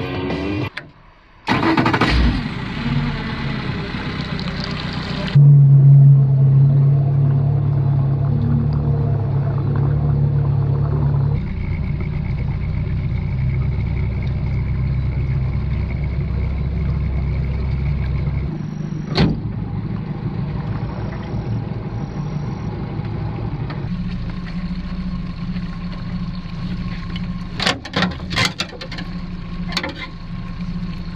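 Outboard motor of a small aluminium boat running steadily with a strong low hum, in several edited stretches, after a brief drop in sound about a second in. A few sharp knocks come near the end.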